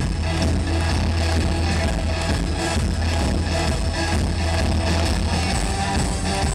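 Live rock band music with a steady drum beat and a heavy bass line, played loud over a PA.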